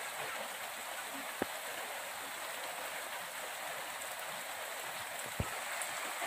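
Steady rain falling, an even hiss, with two faint taps about a second and a half in and near the end.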